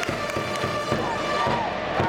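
Japanese baseball outfield cheering section in full song: trumpets holding a cheer melody over drum beats and crowd clapping about four times a second, with many voices chanting along.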